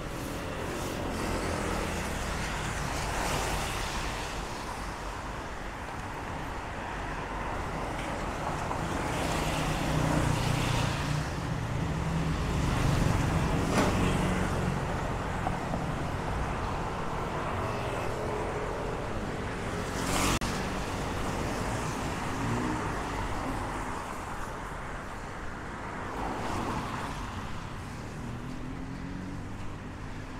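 Road traffic passing, a continuous rumble that swells as vehicles go by and is loudest in the middle. About two-thirds of the way through there is one short sharp click.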